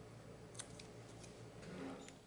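Faint clicks and a short rustle of a paper cut-out being handled and pressed onto a card, over a low steady hum that cuts out near the end.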